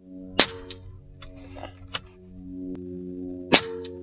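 Evanix AR6k Hunting Master .22 air rifle firing twice, about three seconds apart, each shot a sharp crack followed by a fainter click a moment later, with a few lighter clicks between the shots, over background music.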